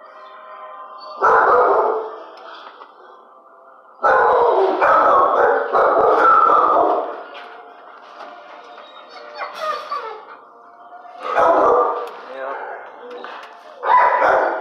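Dogs barking in a tiled shelter kennel: a burst about a second in, a longer run of barks from about four to seven seconds, and another burst near twelve seconds, with fainter sound continuing between them.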